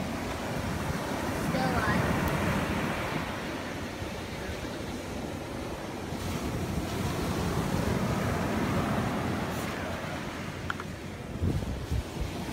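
Ocean surf washing onto a beach, swelling louder twice, with wind buffeting the microphone.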